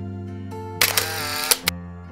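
Background music on plucked strings, with a camera shutter sound effect laid over it about a second in: a sharp click, a brief whirring rush and further clicks, lasting under a second.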